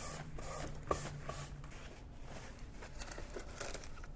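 Paper towel faintly rustling and rubbing as it wipes melted cheese off the ridged non-stick plate of a Hamilton Beach panini press, with a couple of soft clicks.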